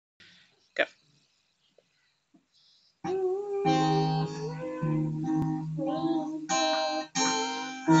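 A young child strumming an acoustic guitar and singing along, starting about three seconds in, the chords sounding in short runs with brief gaps. Before that it is almost quiet, with a single knock about a second in.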